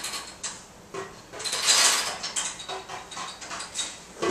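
Improvised percussion: small metal objects scraped and rattled, in rough swells with a few faint ringing tones, loudest about halfway through.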